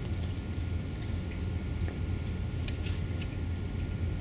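A steady low hum of background room noise, with a few faint crinkles and ticks of a paper sticker being peeled from its backing sheet.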